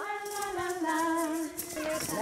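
A woman leading group singing, with other adult and children's voices joining in on long held notes that step down in pitch a little over a second in.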